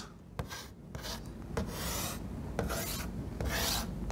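Chalk writing on a blackboard: about half a dozen short scratchy strokes spread over a few seconds as an equation is chalked up.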